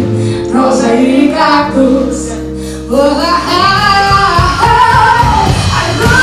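Live band playing with singing: a held chord rings and fades over the first three seconds, then the voices come back in with the band, drums joining soon after.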